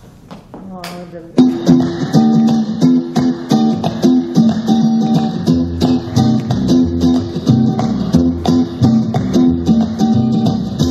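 Mambo dance music: the track starts up about a second and a half in with a steady, rhythmic beat and plucked guitar.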